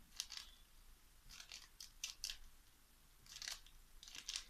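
Faint small clicks and taps of a wax-tipped diamond-painting pen picking resin drills out of a plastic tray and pressing them onto an acrylic panel, in about four short clusters.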